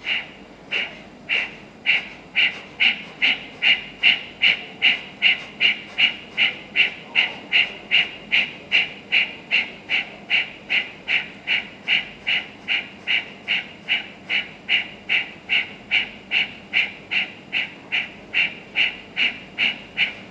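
Kapalbhati breathing: a long run of short, sharp forced exhalations through the nose, forceful but light rather than strained. They speed up from about one and a half a second to a steady two and a half a second.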